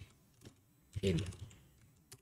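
A few faint, isolated keystrokes on a computer keyboard as code is typed.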